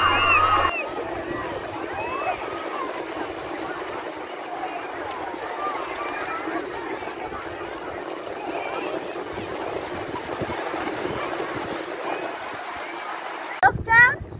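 Shallow seawater splashing and sloshing as children run and tussle through it, over the steady wash of small waves, with children's voices calling faintly in the distance.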